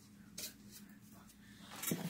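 Faint rustling and light knocks of hands handling ribbon and a craft board, with a brief louder handling noise near the end, over a steady low hum.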